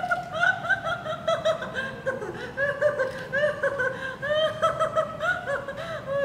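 A young woman laughing hard and without a break, in a long run of quick, short laughs.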